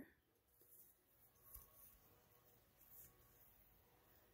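Near silence: room tone, with two very faint brief sounds, one about a second and a half in and one about three seconds in.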